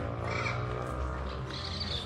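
Heavy truck's diesel engine running under load as the tractor-trailer pulls slowly away, with a low steady hum. Birds chirp now and then.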